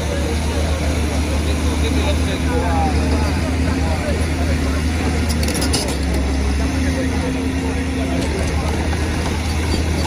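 Caterpillar hydraulic excavator's diesel engine running steadily at close range, a constant low hum, under the chatter of a large crowd of onlookers.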